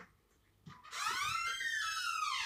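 Door hinge creaking as a door swings shut: one drawn-out squeak, starting about a second in, that rises and then falls in pitch.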